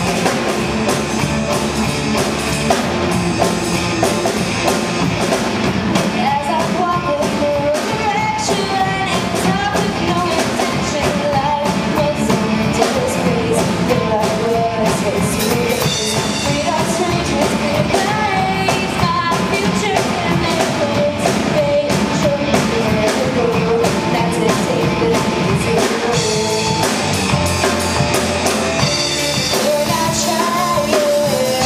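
A teen girls' rock band playing a song live on electric guitars, keyboard and drum kit. A girl's lead vocal comes in about six seconds in.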